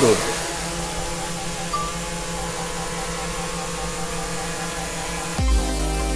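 Small DJI quadcopter's motors and propellers running steadily: an even hum of several close tones with a slow beating and a hiss. Near the end, a deep bass hit of electronic music comes in.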